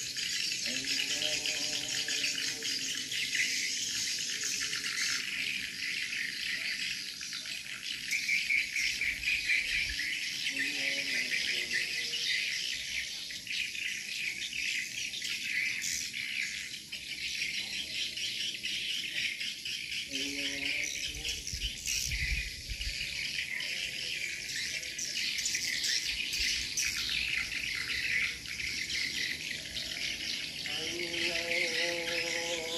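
Dense, steady high-pitched chirping and twittering of small animals, a massed evening chorus that does not let up. Faint lower-pitched calls rise through it a few times.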